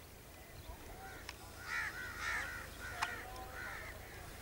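Birds calling in a quick run of short, repeated calls that starts about a second in, with two sharp clicks in between.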